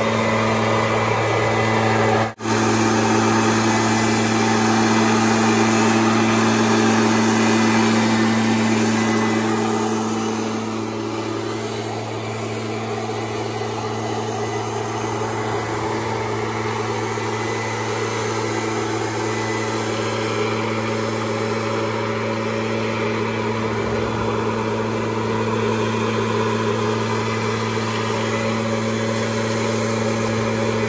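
Gas-powered backpack leaf blower running at steady throttle: a constant engine drone over the rush of air from the nozzle. There is a brief gap about two seconds in, and the sound is a little quieter from about ten seconds in.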